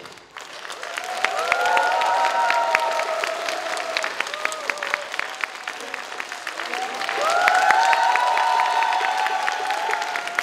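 Concert audience applauding after a brass band's piece ends, the clapping swelling up just after the music stops. Two long drawn-out cheers rise over it, one about a second in and one about seven seconds in.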